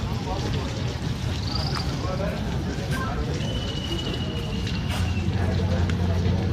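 Outdoor street ambience: a motor vehicle's engine hums steadily and grows louder about five seconds in, with faint background voices. A thin, high, steady whistle is heard briefly about halfway through.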